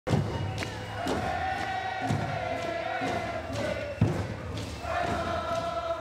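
A group of voices singing a dance song in unison, holding long notes over a steady drum beat about once a second.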